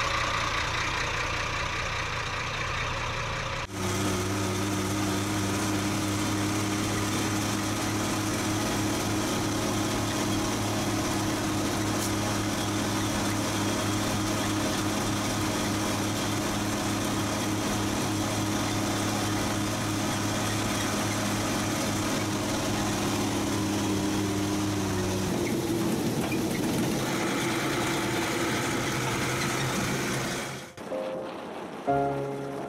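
Old truck engine idling, then after a cut running at a steady pace, heard from inside the cab as the truck drives; its steady low note changes about 25 seconds in.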